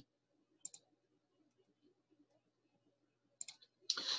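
Computer mouse clicks: a quick double click about half a second in, and another two or three clicks near the end, with near silence between.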